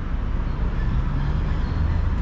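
Low, steady rumble of road traffic.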